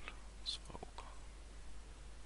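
Faint whispered voice sounds over a low steady hum, with a sharp mouse click about half a second in as a dialog's OK button is pressed.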